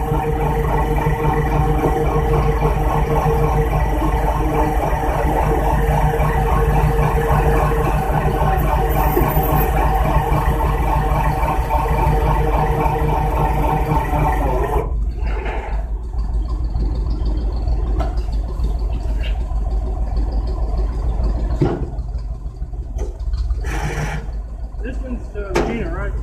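A tow truck's engine runs steadily with a low hum. Over it sits a higher steady hum that cuts off abruptly about fifteen seconds in, leaving the low engine sound. A few short knocks come near the end.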